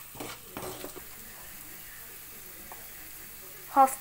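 Onion and ginger-garlic masala sizzling in a stainless steel kadai while a slotted metal spoon stirs it, scraping the pan a few times in the first second. After that it is a steady, quieter sizzle.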